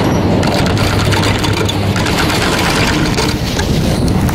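High-speed detachable chairlift running, heard from the chair as it passes a tower: the haul rope rolling over the tower's sheave wheels gives a loud, steady mechanical rumble and hum with fast clicking.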